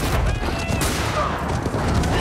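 Film chase soundtrack: a dense, continuous clatter of galloping horses and rapid gunfire, with men yelling over it.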